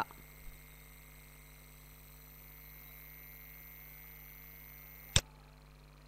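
Faint steady electrical hum and hiss, then a single sharp computer-mouse click about five seconds in, advancing the presentation to the next slide.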